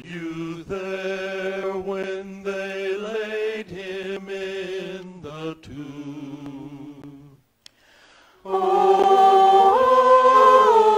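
A small mixed vocal ensemble singing a cappella in held chords, phrase by phrase. The singing fades out about seven seconds in, and after a brief pause the group comes back in louder with a full chord.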